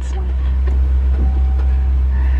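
Safari ride truck running with a steady low engine rumble.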